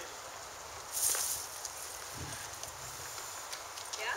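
Faint outdoor background with a brief rustling scuff about a second in, the loudest sound here, and a soft low thump a little after the middle.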